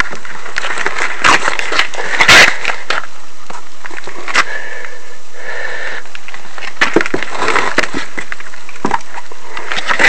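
Handling noise from a hand-held camera being picked up and moved about: scattered knocks, clicks and rubbing over a steady hiss, the loudest knock a little over two seconds in. A faint, brief high tone sounds twice about five seconds in.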